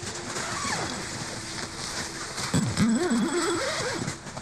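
A person groaning and breathing hard after inhaling CS gas: a falling vocal cry early on, then a loud wavering groan that swings up and down in pitch through the second half.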